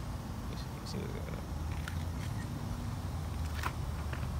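Low, steady rumble of handling noise on a hand-held phone microphone, with a few faint clicks.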